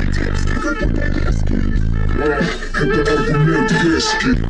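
Loud music with vocals and a heavy bass line played through a competition car-audio system, heard inside the car's cabin.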